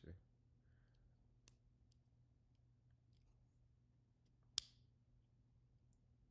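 Near silence: room tone with a low steady hum, a few faint ticks, and one sharp click about four and a half seconds in.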